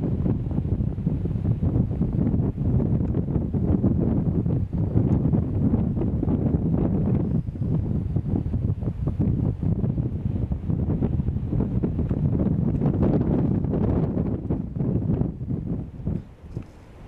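Strong wind buffeting the camcorder's built-in microphone: a heavy, gusting low rumble that eases off at the very end.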